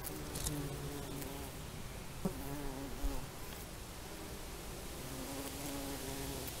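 Flying insects buzzing, their hum wavering up and down in pitch, with a couple of brief soft ticks about two and three seconds in.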